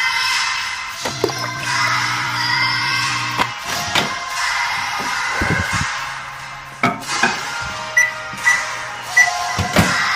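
Background music over a microwave oven being used: a couple of door clunks, then three short keypad beeps near the end as the time is entered.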